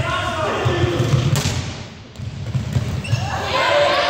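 Players' voices calling out in a large, echoing sports hall, over repeated thuds of a large inflatable fitball and footsteps on the court floor. A sharp slap of an impact comes about a second and a half in.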